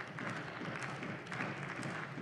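Scattered applause from a parliamentary chamber: light, irregular clapping with faint voices murmuring underneath.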